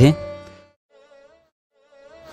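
Devotional background music and the tail of a spoken phrase fading away, then a short near-silent gap holding only a faint wavering tone, before the music fades back in near the end.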